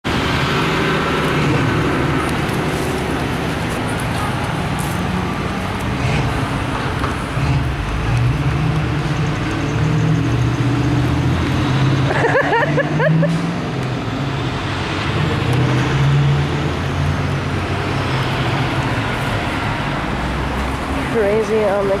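Steady road traffic noise from cars on a town street, with a brief voice about halfway through and someone starting to speak at the very end.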